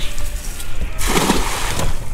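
A cast net's weighted lead line landing on the water in a wide ring, making a spattering splash that starts about a second in and lasts just under a second.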